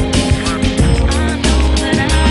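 Background pop song playing, with a steady drum beat and heavy bass under sustained instrumental notes.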